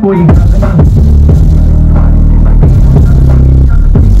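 Loud bass-heavy DJ music played through a stack of two BRC subwoofer cabinets during a sound test, with long, deep bass notes dominating.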